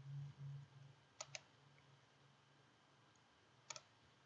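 Faint computer mouse clicks: two quick press-and-release pairs, about a second in and again near the end, selecting radio buttons on screen. A faint low hum lies underneath, a little stronger at the start.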